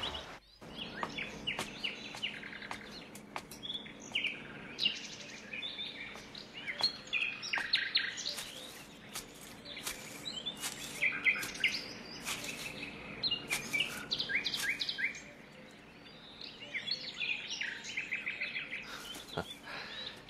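Songbirds chirping: many short, high calls repeating and overlapping, with a brief lull about three-quarters of the way through.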